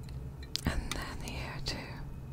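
Close-miked soft whispering, broken by several small sharp clicks and taps from a fingertip and nail handling pink jewelled earrings hanging on their card, most of them bunched in the first half of the clip.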